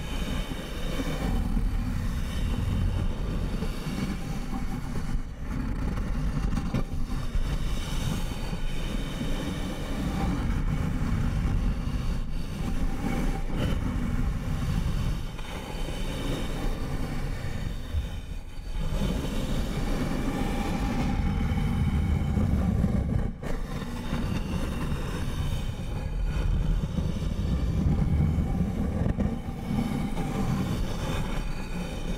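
Fingers rubbing and scratching over the surface of a large glowing white sphere close to the microphone: a continuous rumbling, scratchy texture with a few brief dips.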